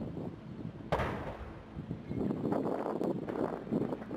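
Sharp bang about a second in as a 9-metre stainless-steel Starship test tank, filled with liquid nitrogen, ruptures at about 8.5 bar in a pressure test to destruction, followed by a low rushing noise as the released nitrogen cascades over the site.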